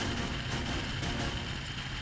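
A bass boat's outboard motor running at speed, with a steady rush of wind and water spray from the wake.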